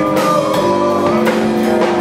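A rock band playing live: electric guitar over a drum kit, with held guitar notes and regular drum hits.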